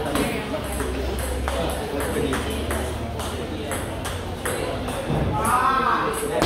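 Table tennis rally: the celluloid-type plastic ball clicking off the rubber bats and the table in a quick back-and-forth. Near the end a player lets out a loud shout as the point ends.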